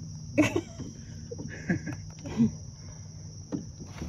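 Night swamp insects, crickets among them, keep up a steady high chorus, while a sharp knock about half a second in and a few softer knocks and bumps come from the wooden flat-bottom boat as it is poled along.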